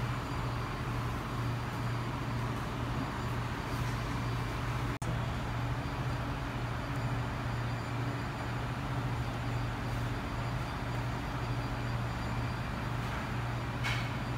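Steady low mechanical hum over an even background rumble, unchanging throughout, with a brief dropout about five seconds in.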